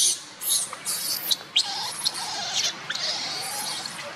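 Infant long-tailed macaque screaming while held by its mother: several short, piercing high-pitched squeals in the first second and a half, the first the loudest, then a lower, wavering cry.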